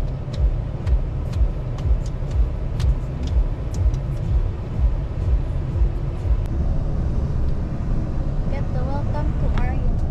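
Road and engine rumble inside a moving limousine's cabin, with a steady low thump about twice a second. Voices come in near the end.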